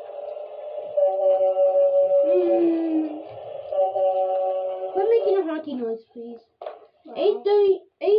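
A child's voice humming long, steady notes, sliding down in pitch about five seconds in, then a few short vocal bursts near the end.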